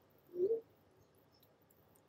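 A brief rising hum from a man's voice, about half a second in; otherwise quiet.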